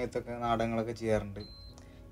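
A person talking for about a second, then a short, high, steady beep about one and a half seconds in.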